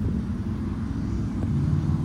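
A car engine idling with a steady low rumble.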